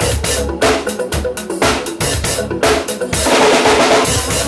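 Drum kit played to a steady beat over a backing pop track, bass drum and snare strokes regularly spaced. The playing grows louder and denser in the last second.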